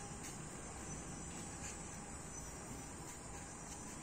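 Crickets chirring faintly and steadily over low background noise.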